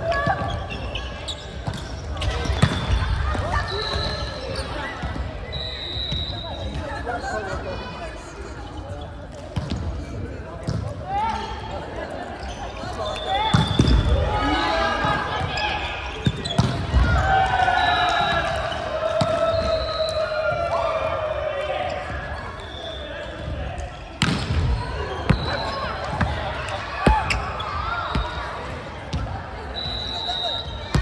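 Volleyballs being struck, a few sharp smacks echoing through a large gymnasium, amid players' voices calling out on court.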